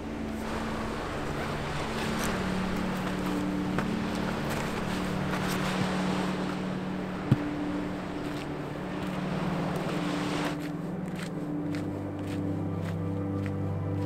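Background music of sustained, slowly changing low notes over a steady rushing noise that cuts off about ten seconds in. A single sharp click about seven seconds in.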